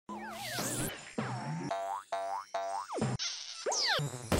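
Cartoon sound effects over a short jingle: a wavering, wobbling tone, then three quick rising boings, then falling swoops near the end.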